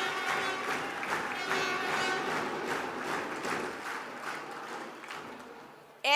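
A large indoor crowd applauding, the clapping dying away gradually over several seconds.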